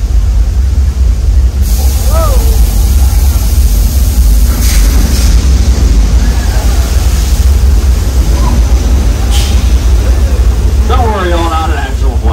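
Staged flash flood on a studio street set: a torrent of water released down the street, rushing and splashing over a deep rumble. The hiss of rushing water comes in about two seconds in, with louder surges of spray about five and nine seconds in.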